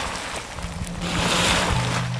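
Surging rush of a boiling hot spring's churning water, swelling about a second and a half in, under background music with low held notes.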